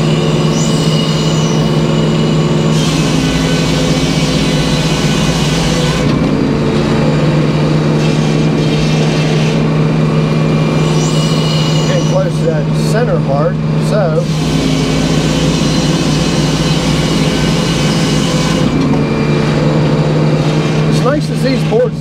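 Edmiston hydraulic circular sawmill running, its large circular blade sawing a black locust log into boards. A steady low drone runs underneath, while the brighter cutting noise comes and goes every few seconds as the sawing goes on.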